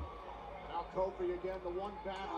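Speech only: a voice talking, a little quieter than the talk just before and after.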